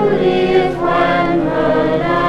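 A choir singing a Danish Christmas song in slow, held notes, from a 1954 78 rpm gramophone recording.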